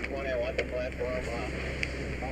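Muffled, raised voices of firefighters over a steady low rumble, with two short sharp clicks, one about half a second in and one near the end.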